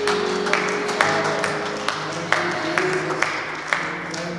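Hand claps in a steady rhythm, a little over two a second, over soft background worship music with long sustained chords.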